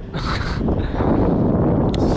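A man laughing over wind noise on the microphone.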